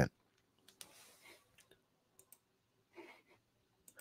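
Near silence in a small room, broken by a few faint short clicks, one about a second in and another about three seconds in.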